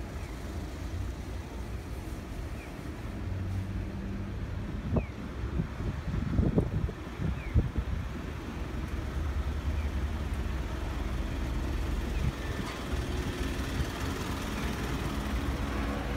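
Street traffic noise: car and small-truck engines running and idling at an intersection, a steady low rumble with a few louder knocks in the middle.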